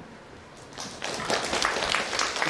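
Audience clapping, starting about a second in and quickly growing louder.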